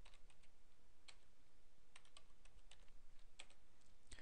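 Faint computer-keyboard typing: a string of irregular keystrokes as numbers are entered.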